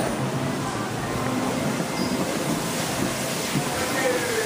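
Restaurant room ambience: a steady rushing noise with a low hum underneath and faint voices in the background.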